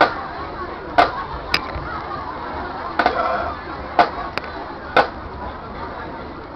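Marching band drumsticks clicking a steady beat, sharp clicks about once a second, over crowd chatter.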